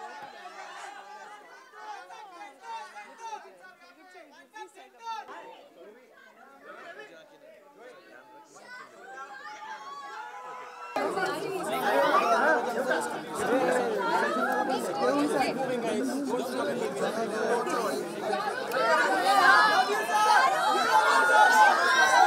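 Crowd chatter: many overlapping voices talking at once. It is fairly quiet at first, then jumps abruptly about halfway through to a loud, close, dense crowd.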